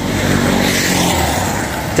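A motor vehicle passing close by on the road: steady engine and tyre noise that eases off slightly as it goes by.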